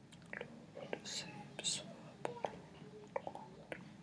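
Quiet, breathy whispered muttering and mouth noises from a person close to the microphone, with a few light clicks.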